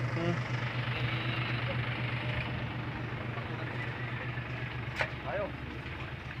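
A steady low mechanical hum, like an engine running at idle, with a faint hiss over it. A brief faint voice comes in about five seconds in.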